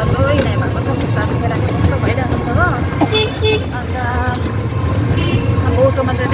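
Street traffic heard from inside an open rickshaw: a steady low rumble of road and motor noise, with a vehicle horn tooting twice about three seconds in and once more near the end.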